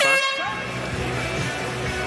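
A short, loud horn blast right at the start, then background music with a steady low bass line.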